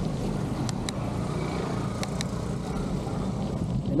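Wind rushing over the microphone and bicycle tyres rolling on a concrete road while coasting downhill. There are a few short, sharp clicks: two close together about two-thirds of a second in, and two more about two seconds in.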